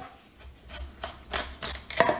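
Chef's knife cutting through the hard end of a raw spaghetti squash on a wooden cutting board: a quick series of six or so short, sharp crunches as the blade works through the rind.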